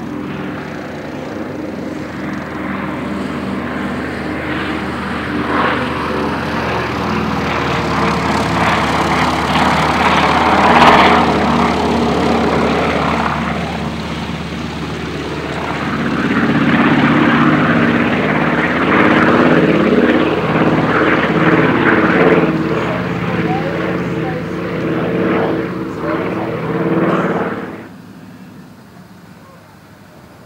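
A DHC-4 Caribou's two Pratt & Whitney R-2000 radial piston engines and propellers droning steadily as the aircraft flies past. The sound swells and fades as it passes, loudest about a third of the way in and again through the latter half, and drops off sharply near the end.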